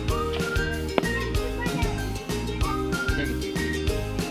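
Instrumental background music with a repeating bass line, regular percussion and short rising whistle-like notes.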